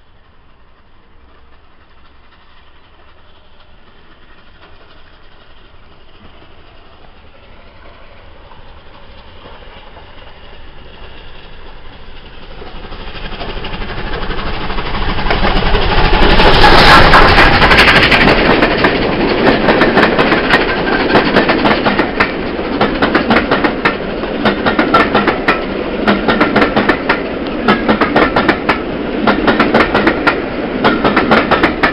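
Passenger train headed by the Bulleid Battle of Britain class steam locomotive 34067 Tangmere, approaching and running through a station. Its sound builds for about fifteen seconds and is loudest as the locomotive passes about sixteen seconds in. The coaches follow with a rapid, steady clickety-clack of wheels over the rail joints.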